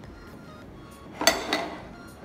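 Tall drinking glass clinking twice, about a quarter second apart, as it is set down on the counter, ringing briefly each time, over background music.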